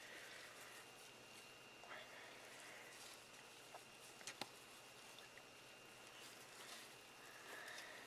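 Near silence: faint rustling and a couple of soft clicks as a gloved hand stirs damp shredded-paper and coffee-ground bedding in a worm bin, over a faint steady high tone.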